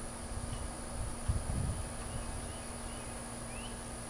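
Quiet outdoor ambience: a steady low hum, a few faint, short high chirps spread through it, and a couple of soft low thuds about a second in.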